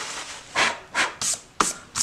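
Paper towel full of whittled wood shavings being scrunched up by hand: a brief rustle, then four short crackles over the next second and a half, the last ending in a click.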